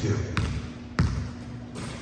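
A basketball bounced twice on a hardwood gym floor, two dribbles about two-thirds of a second apart, just before a jump shot.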